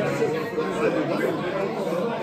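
Several people talking at once: indistinct overlapping chatter, with no single voice standing out.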